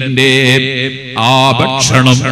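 A man's voice chanting in a long, held melodic line, its pitch wavering slowly and then gliding in the second half.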